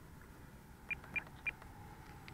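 Three short, identical high beeps about a quarter second apart, from a radio-control transmitter's trim buttons being pressed. The pilot is trimming out the plane's slight roll to the right.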